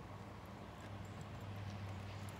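Faint rubbing of a cloth towel wiped over a car's plastic bumper, over a steady low hum.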